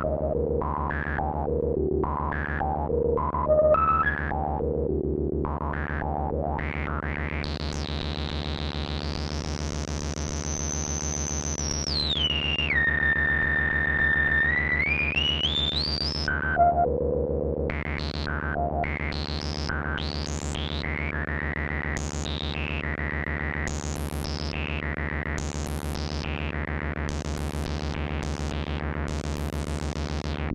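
Ciat-Lonbarde Peterlin, a Benjolin-style analog synthesizer, playing one oscillator through its resonant filter, with the rungler circuit stepping out a pattern of short blips of changing pitch over a steady low drone. Through the middle a single whistling filter tone glides up high, holds, drops, then climbs again before the stepped blips return.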